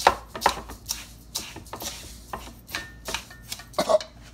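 Metal spoon stirring dry kosher salt and ground white pepper in a bowl: a run of short gritty scrapes through the grains, about two to three strokes a second.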